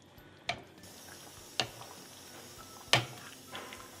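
Wooden spatula knocking against the pan while stirring a thick curry: three sharp clicks, the last the loudest.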